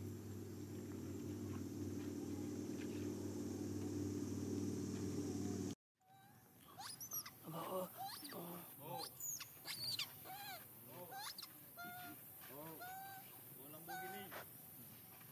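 A steady low drone that cuts off abruptly about six seconds in. It is followed by a run of short, high squeaky calls from young long-tailed macaques, each rising and falling in pitch, about one or two a second.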